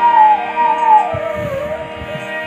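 Kirtan music: a bamboo flute plays a melody that slides down in pitch, over the steady drone of a harmonium, with a few low drum strokes.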